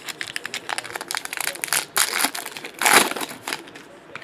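Foil trading-card pack wrapper being handled and torn open: a dense run of sharp crinkling crackles, loudest about two and three seconds in.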